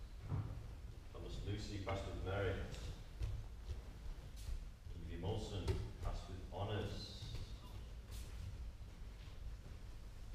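Indistinct talking in a large hall, two short stretches of voices, over a steady low background rumble.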